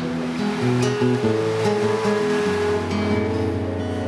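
Acoustic guitar playing sustained chords that change every second or so, with a soft wash of ocean-wave sound underneath, a hand-made 'sea' effect added to the song.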